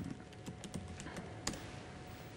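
Faint, irregular keystrokes and clicks on a computer keyboard, the loudest about one and a half seconds in.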